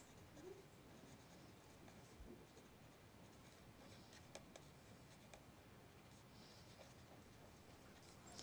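Faint scratching of a pen writing on paper, a string of short strokes.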